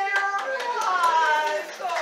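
A high-pitched voice with sliding pitch, over a scatter of sharp clicks.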